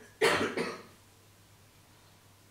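A person coughing: one short cough in two quick bursts, about a quarter second in.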